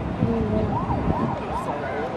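An ambulance-style siren sound effect, wailing up and down in quick repeated arches, cueing a mock emergency on the ride.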